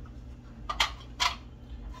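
Two short scraping clatters, about half a second apart, as a metal grater and a container of freshly grated cucumber are handled, over a low steady hum.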